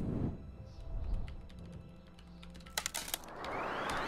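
Quiet sound effects of a stream overlay alert: a few sharp clinks about three seconds in, then a rising whoosh that builds toward the end, over faint music.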